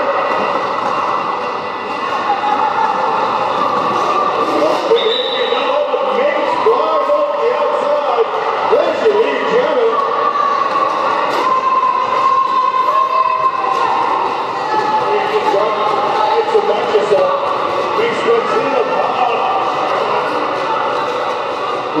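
Quad roller skate wheels rolling and scuffing on a wooden sports-hall floor as a pack of roller derby skaters jostles. Many voices shout and call over it in the echoing hall, with scattered clicks of skates and contact.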